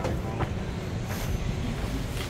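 Steady low rumble of outdoor background noise, with a few light clicks and taps near the start.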